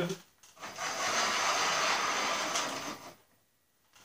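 The wooden carriage that holds the dust-collector pipe sliding along ceiling-mounted metal strut rails. It makes a steady, even sliding noise for about two and a half seconds, then stops abruptly.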